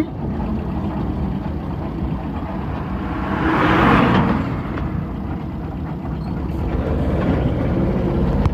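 Steady engine and road rumble heard from inside a moving vehicle's cab. A rush of noise swells and fades about three to four and a half seconds in as an oncoming truck passes close by.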